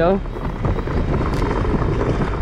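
Wind buffeting the camera's microphone: a steady, loud rumbling rush with no distinct events.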